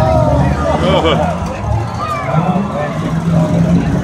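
Demolition derby cars' engines running together as a steady low drone, under the chatter of nearby spectators' voices.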